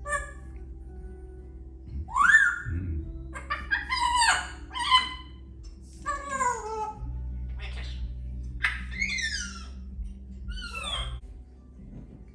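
A parrot making a series of whistled calls: one rising whistle about two seconds in, then several falling, sliding calls through the rest, over a steady low hum.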